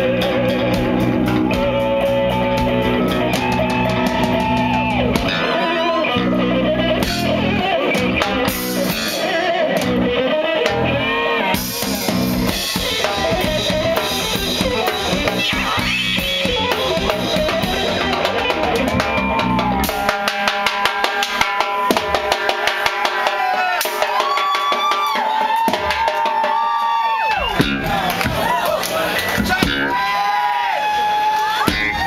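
Live instrumental fusion-rock trio playing: electric guitar, bass guitar and drum kit. About two-thirds of the way in, the low end drops away, leaving bending guitar lines over sharp drum hits.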